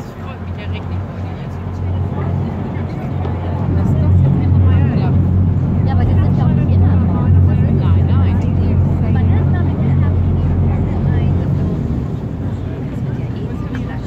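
Boat engine running with a steady low drone, loudest through the middle of the stretch, with people's voices chattering in the background.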